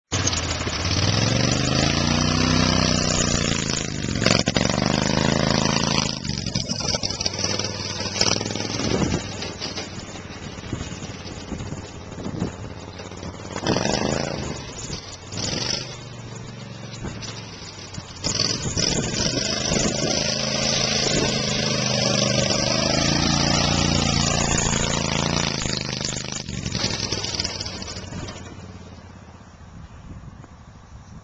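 Lifted off-road golf cart driving on dirt trails, its motor revving up and down. It is loudest near the start and again in the second half, and fades away over the last few seconds.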